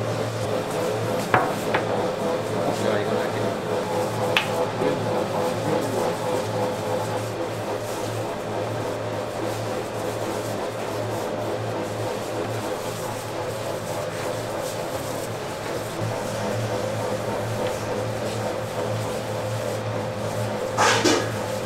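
Steady low hum of kitchen equipment, with a couple of sharp knocks in the first few seconds.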